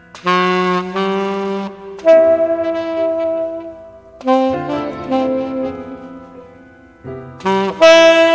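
Tenor saxophone playing a slow jazz ballad melody in long held notes, phrases starting about every two seconds, with an accompanying band underneath.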